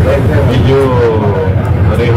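Indistinct voices speaking over a loud, steady low rumble.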